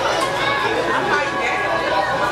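Indistinct chatter of many diners talking at once in a busy restaurant dining room, a steady mix of overlapping voices.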